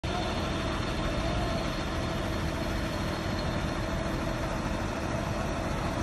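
School bus engine running steadily as the bus drives past.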